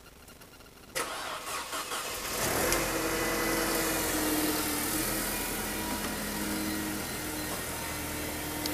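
Mercedes-Benz CLK (W208) engine cranked by the starter about a second in, catching after roughly a second and a half and then running at a steady idle.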